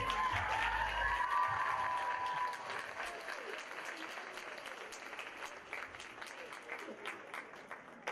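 Audience applauding and cheering as the dance music ends about a second in; the applause fades gradually.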